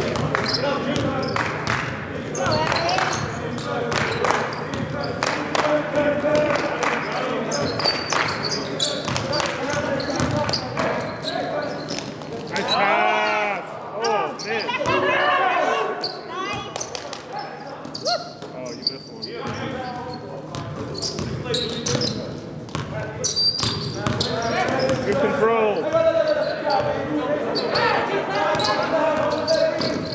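A basketball being dribbled, bouncing repeatedly on a gym court during live play, with voices and reverberation from a large hall.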